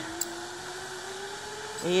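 Zipline trolley pulleys running along the steel cable: a faint, steady whir that rises slightly in pitch, with a single click shortly after the start.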